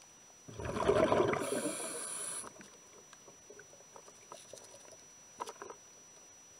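A loud rush of bubbling water heard through an underwater camera, starting about half a second in and lasting about two seconds, with a hiss at its end. Afterwards there are only faint scattered clicks in the water.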